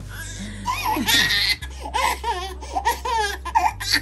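A young infant crying in high, wavering wails while held still for ear piercing, with adults laughing alongside.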